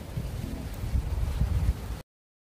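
Wind buffeting a phone's microphone outdoors: an uneven low rumble with no voice over it.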